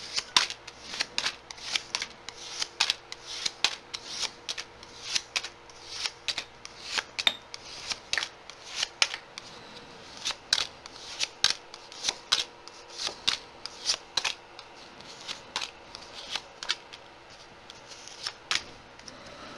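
Tarot cards being handled: a steady, irregular run of short sharp card snaps and slaps, about two or three a second, as the deck is shuffled and cards are laid down.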